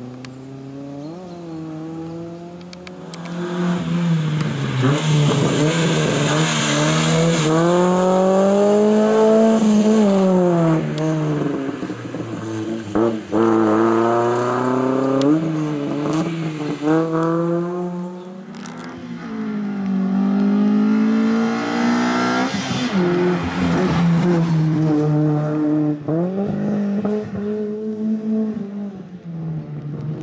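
A slalom race car's engine, driven hard, revs up and falls back again and again as the car accelerates and lifts between the cones, with several climbs and drops in pitch.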